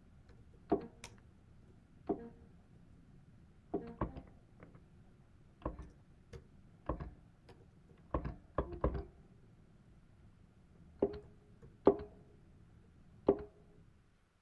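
Irregular clicks and knocks of computer keys and mouse as notes are entered in Sibelius notation software, about a dozen over the stretch. Several are followed by a brief single note from the program's playback of each entered note.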